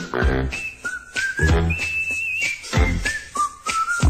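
Cartoon closing-credits theme music: a whistled single-note melody that steps and slides between held notes, over drum hits and a bass line.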